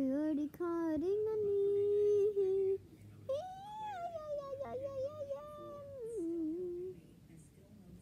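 A child humming wordlessly: short notes, then a long steady low note held for about two seconds, then a higher, wavering tune that slides up and down and stops about seven seconds in.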